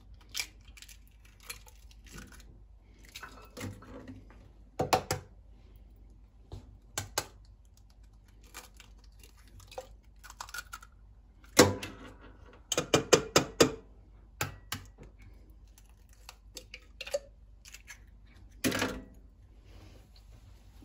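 Raw eggs being cracked one by one into a tall clear beaker: scattered sharp taps and cracks of eggshell, with a quick run of taps about thirteen seconds in.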